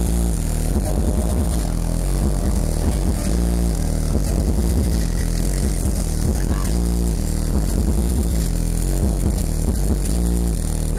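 Electronic dance music with a heavy bass line, played loud over a nightclub sound system during a live DJ set.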